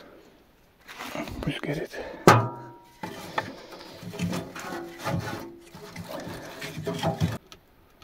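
Split firewood being pushed into a small sheet-metal wood stove: knocks and scrapes of wood against metal, with one sharp metallic clang a little over two seconds in that rings briefly.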